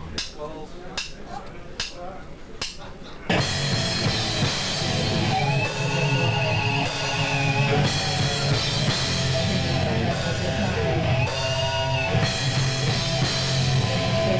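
Hardcore band playing live. Scattered drum and guitar hits give way, a little over three seconds in, to the full band coming in loud with distorted guitars, bass and drums.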